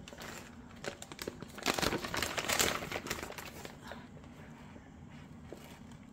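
Thin plastic holographic window film crinkling as it is handled. The crackles are irregular, busiest in the first three seconds and thinning out after that.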